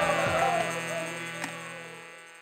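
Harmonium holding a sustained chord as the music fades out, with the last sung note gliding down and ending about half a second in. A single click is heard past the middle.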